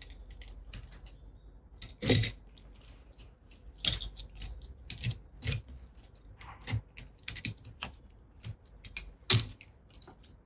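Box cutter blade scraping and peeling bark off a Japanese white pine branch to make a jin: irregular sharp clicks and short scratches, the loudest about two seconds in and near the end.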